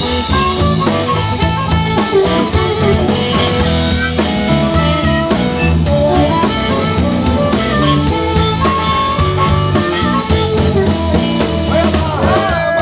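Live blues band playing loudly: an amplified harmonica, blown with the microphone cupped in the hands, plays held and bending notes over electric bass and a drum kit.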